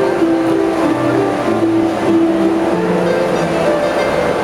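Two harps played together: plucked notes ringing on into each other, a tune in the middle range over slower, lower notes.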